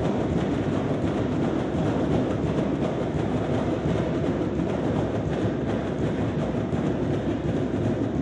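Drumline drumming without a break, a dense, loud clatter of drums echoing around a gymnasium.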